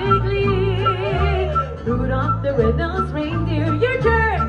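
All-female mariachi band playing live: a woman sings long notes with wide vibrato over violin, trumpet and guitars, with a bass line pulsing steadily underneath.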